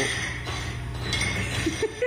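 Small metal ramps clinking and scraping on a steel floor plate as a radio-controlled truck bumps over them.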